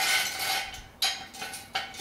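Steel jack stand clanking as it is slid into place on a concrete floor: a few sharp metallic strikes, at the start, about a second in and near the end, each ringing briefly.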